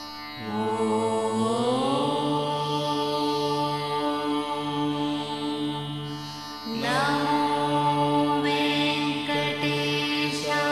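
Devotional background music: a chanted mantra sung over a steady drone. A sung phrase enters with a rising glide about half a second in, and another enters near the seven-second mark after a short dip.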